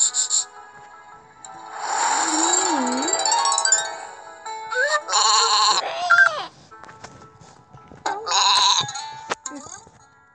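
Cartoon sheep bleats from a children's story app: three wavering bleats, one after another, over light background music, with a few soft clicks near the end.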